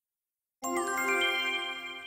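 A short chime-like musical jingle marking a section title: after a moment of silence, a quick run of rising bell-like notes comes in about half a second in, then the notes ring on together and slowly fade.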